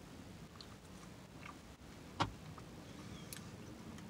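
Faint chewing of a soft, goo-filled Twizzlers twist, with small scattered mouth clicks and one sharper click a little over two seconds in.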